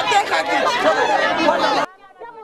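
Crowd chatter: many people talking at once in a dense hubbub, cut off abruptly near the end.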